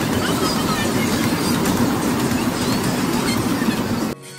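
Amusement-park toy train's carriages rolling past close by on a narrow-gauge track, a steady rattling rumble with short high squeaks mixed in.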